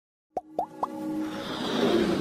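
Three quick plopping pops about a quarter second apart, followed by a swelling electronic music build: the sound design of an animated logo intro.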